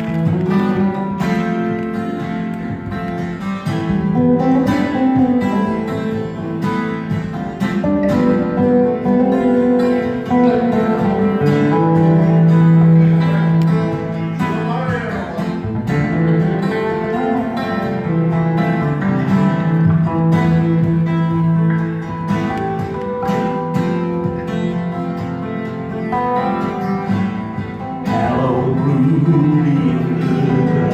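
Two acoustic guitars played live together, strummed and picked steadily.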